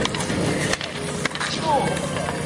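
Inline skate wheels rolling on an asphalt rink, with a few sharp clacks of hockey sticks and voices shouting during roller hockey play.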